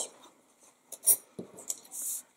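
Soft handling of paper and cardstock on a craft mat: a few light taps and rustles, then a short slide of the card across the mat near the end.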